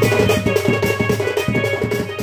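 Double-headed barrel drum (dhol) beaten by hand in a fast, steady rhythm, with steady held notes from a melody instrument sounding over it.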